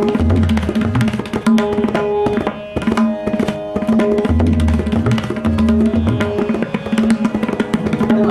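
Tabla solo in teentaal in the Ajrada style: rapid strokes on the dayan, with deep resonant bayan strokes that swell in pitch at intervals, over a steady harmonium lehra.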